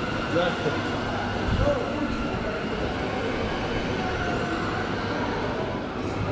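Background hubbub of a busy indoor market hall: faint distant voices of shoppers and vendors over a steady hum.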